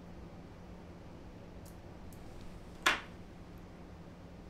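A single sharp snip of fine scissors about three seconds in, cutting the excess turkey-tail wing-case material at the head of a fly. It comes over a faint steady low hum, with a few tiny ticks just before it.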